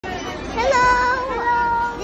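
A high-pitched voice calling out in a long, drawn-out sound that starts about half a second in and holds for over a second with a slight wobble in pitch.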